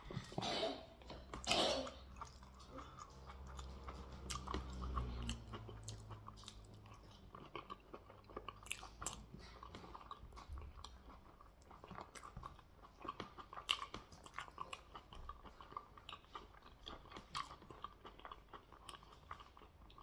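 Close-up chewing of goat head meat: wet mouth clicks and smacking with some crunching, a few louder bites in the first couple of seconds, and a low hum for a few seconds near the start.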